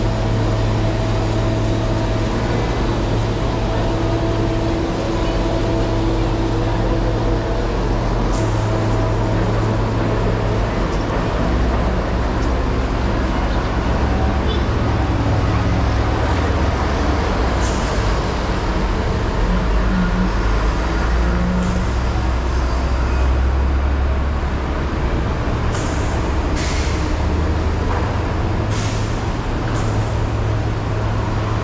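Roadside city traffic with heavy diesel trucks and buses, a steady low engine rumble throughout. Near the end come two short air-brake hisses.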